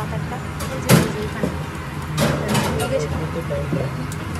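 Metal serving tongs clacking as tempura is picked from a tray: one sharp click about a second in and a shorter clatter a little past two seconds, over background chatter and a steady low hum.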